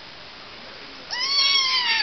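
Five-week-old Bengal kitten meowing: one loud, high-pitched cry beginning about a second in.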